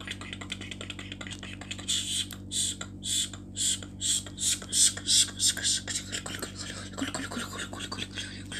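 A person's whispered, hissing mouth sounds: a run of short breathy bursts, about two a second, loudest in the middle, over a steady low electrical hum.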